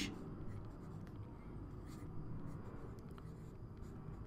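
Faint scratching of a stylus writing on a tablet, with a few light taps as the letters are formed.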